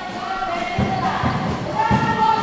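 A basketball bouncing on a hardwood gym floor, a few irregular thuds, over steady music that echoes in a large hall.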